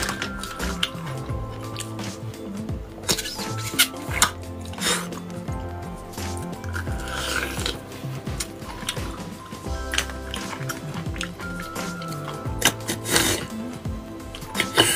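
Background music with steady held notes, with several short, wet slurps on top as marrow is sucked out of stewed bone pieces.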